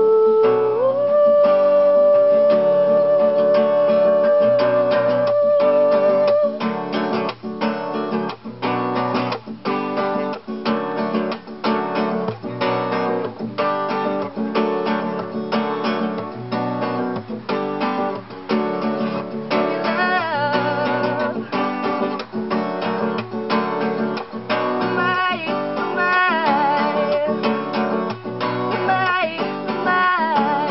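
Acoustic guitar strummed in a steady rhythm, with a woman's voice holding one long sung note over it for about the first six seconds. Wordless singing comes back briefly about two-thirds of the way through and again near the end.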